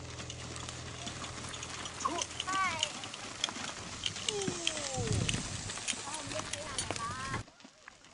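Donkey hooves clip-clopping on a dirt track as a donkey cart passes, with people's voices calling out over the hoofbeats. The sound cuts off abruptly about seven and a half seconds in.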